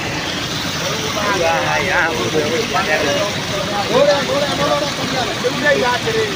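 Floodwater rushing down a road in a steady roar, with people's voices breaking in over it, loudest about four seconds in.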